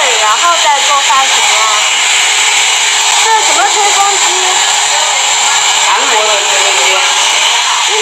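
Handheld hair dryer blowing steadily while hair is blow-dried with a brush, voices talking over it.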